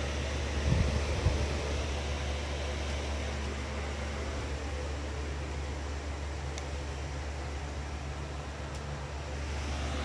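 Steady low hum with a hiss over it, like a fan or air conditioner running, with two soft thumps about a second in.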